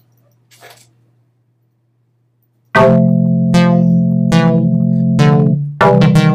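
Near silence with a faint low hum for almost three seconds, then software synthesizer music starts abruptly. It is a sustained low chord with sharply struck, quickly fading notes about once every 0.8 seconds, a slow melody at 80 BPM played on a MIDI keyboard through a polyphonic synth in Logic Pro.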